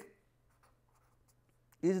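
Faint scratching of a pen writing on paper, in a pause between a man's spoken words.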